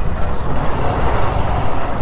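Riding noise from a motorcycle moving through busy city street traffic, picked up by a helmet-mounted camera mic: a steady rushing noise over a low rumble.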